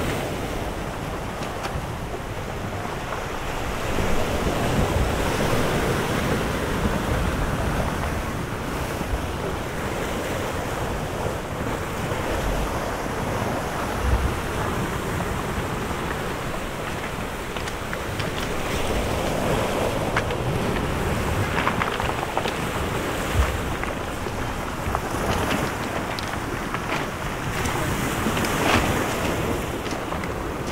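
Small waves washing onto a pebble beach, swelling and easing every few seconds, with wind buffeting the microphone.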